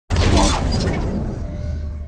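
Logo-reveal sound effect: a sudden loud crash, like something shattering, that dies away slowly with a low rumble.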